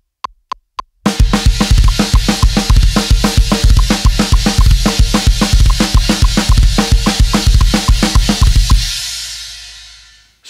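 A few evenly spaced clicks count in. About a second in, a drum kit starts a fast heavy metal groove in seven at 220 BPM, with steady bass drum, snare and cymbals. It stops near nine seconds and the cymbals ring out.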